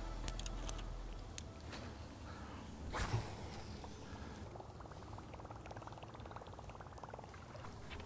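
Faint fishing-reel sounds from a cast and retrieve. An airy hiss of line running off the spool peaks about three seconds in, followed by the reel being cranked with a fast, fine, even ticking.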